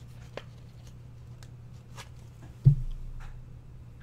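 Faint clicks and rustles of cardboard trading cards being handled and sorted by hand, over a steady low hum. One short, loud, low thump comes about two-thirds of the way through.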